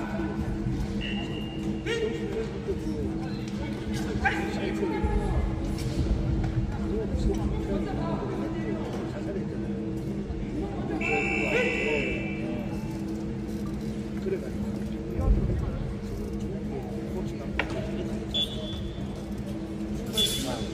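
Sports-hall sound during a wushu sanda bout: a steady low hum, scattered shouted voices, and a few thuds, the loudest about fifteen seconds in.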